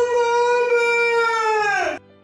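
A long, high-pitched yell held on one note for about two seconds, falling in pitch just before it cuts off.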